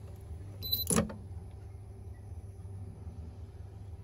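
A portable fridge's alarm beeper gives one short high beep, then a sharp snap about a second in as the buzzer is pulled off the control board with pliers, which silences the beeping. After that only a low steady hum remains.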